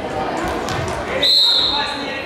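Referee's whistle blown in one steady, shrill blast of under a second, starting a little past halfway, restarting the wrestling bout, over background voices in a sports hall.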